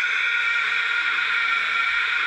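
A single long, high-pitched scream held at a steady pitch without a break.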